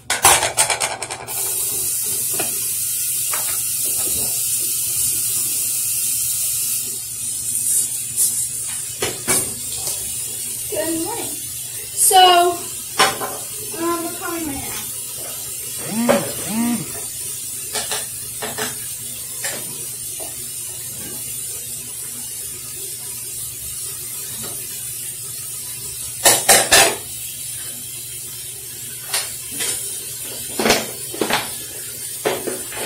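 Tap running into a sink for several seconds to soak a hairbrush, then shut off about seven seconds in. After that, plastic cleaning bottles and items clatter as they are picked up and set down, with a short cluster of sharp knocks near the end.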